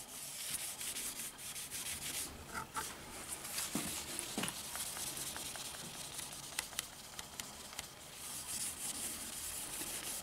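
Paper towel rubbing back and forth along the wooden stock of a rolling-block .22 rifle, working wood restorer into the finish: a steady dry scrubbing with a few faint clicks.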